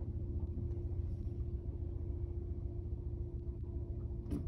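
A Ford car's engine idling while the car stands still, heard from inside the cabin: a steady low rumble with a constant hum.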